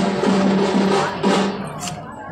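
Procession drumming: drums beaten in a busy rhythm over a steady droning tone. The sound drops away sharply about three quarters of the way through.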